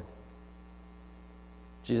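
Low, steady electrical mains hum with a row of even overtones, heard in a pause between spoken words. A man's voice comes back in near the end.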